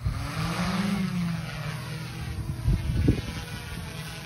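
Multirotor lidar survey drone (SmartDrone Discovery) taking off: a steady propeller hum that rises slightly in pitch about a second in as it lifts and climbs away. Two brief low thumps come about three seconds in.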